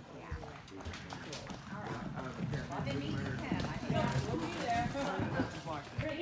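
Sorrel gelding galloping on arena dirt during a barrel run, its hoofbeats thudding, with people talking over it.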